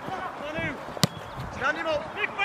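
A football kicked once, a sharp thud about a second in, with players' voices calling across the pitch.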